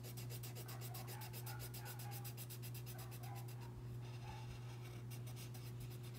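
Coloured pencil shading back and forth on paper in quick, even strokes, about eight a second, stopping briefly a little past halfway and then starting again. A steady low hum runs underneath.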